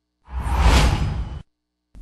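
A single whoosh transition sound effect for an animated graphic wipe, swelling up and fading away over about a second, with a low rumble underneath.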